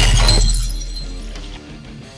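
Glass-shattering sound effect: a sudden crash at the start that rings out and fades over about a second and a half, over background music.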